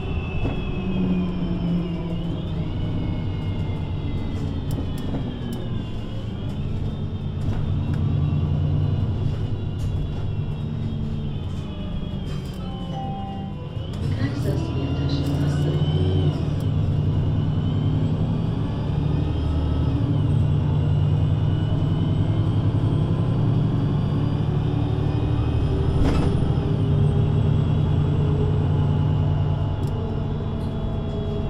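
VDL Citea LLE 120 city bus with its Voith automatic gearbox, heard on board while driving: the engine pitch rises and falls with gear changes, eases off briefly about thirteen seconds in, then pulls harder and louder.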